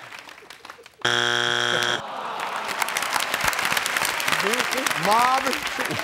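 Family Feud strike buzzer: a harsh, low, steady buzz lasting about a second, the sign of a wrong answer that is not on the board. The studio audience then applauds.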